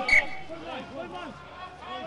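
A man's voice speaking, as in television sports commentary. A short, loud, high-pitched sound comes just after the start.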